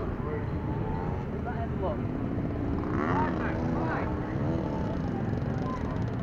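Children's voices calling and chattering outdoors over a steady low rumble, with the voices loudest about halfway through.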